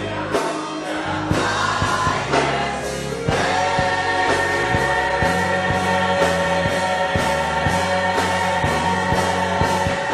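Gospel choir singing with drums and low bass notes underneath. About three seconds in, the choir swells louder into a long held chord.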